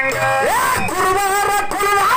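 Men singing a dollina pada, a Kannada folk song, amplified through a stand microphone, in long wavering held notes that slide up in pitch about half a second in.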